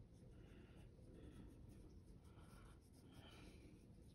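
Faint brushing of a small paintbrush on watercolour paper: about four soft strokes over a low room hum.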